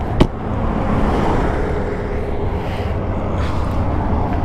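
Steady rumble of road traffic, with one sharp click a moment after the start.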